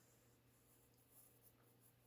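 Near silence, with a few faint scratches of a pencil drawing on paper a little over a second in.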